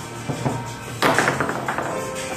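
Foosball table in play: the hard ball and rods knock a few times, then about halfway through comes a loud, fast run of clattering strikes, over steady background music.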